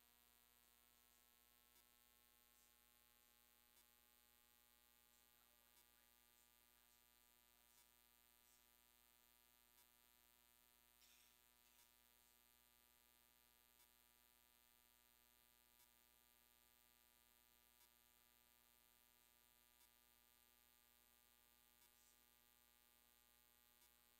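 Near silence: a faint, steady electrical hum with a faint tick about every two seconds.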